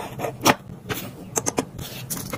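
Light clicks and taps of a small metal wax-seal melting furnace and wax spoon being handled and set down on a tabletop, the sharpest knock about half a second in and a quick run of clicks past the middle, over a low steady hum.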